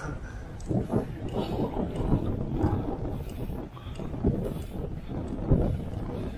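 Wind rushing over a camera microphone on a moving bicycle, with irregular low buffets.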